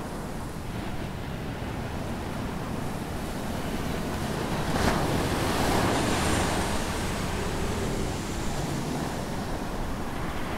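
Jet airliner passing low overhead: a steady rushing roar that swells to its loudest about halfway through, then slowly fades as it flies away.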